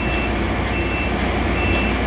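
A reversing alarm on a vehicle or piece of equipment sounds three short, evenly spaced high beeps, a little more than one a second, over a steady low engine rumble.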